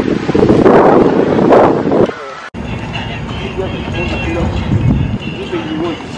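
Wind buffeting a phone microphone, loud and rough, cut off abruptly about two and a half seconds in. After the cut, people's voices and chatter are heard.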